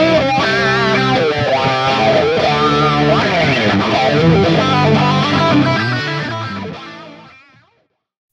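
Electric-guitar lead solo reamped from its DI track through a Fractal Audio Axe-Fx III preset with a wah pedal, playing back over the backing track: held, bent notes with vibrato and sweeping wah. It fades out about six seconds in.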